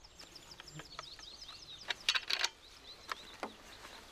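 A small bird singing rapid series of short, high, falling chirps, one phrase in the first second and a half and another around three seconds in. A few sharp clicks about two seconds in are louder than the song.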